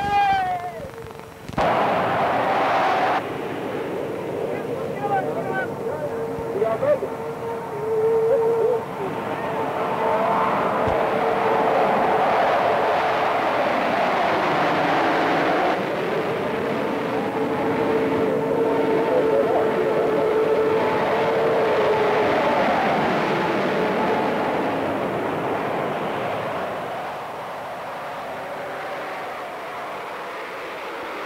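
Jet aircraft flying over with a steady whining roar that swells, holds for several seconds, then slowly fades.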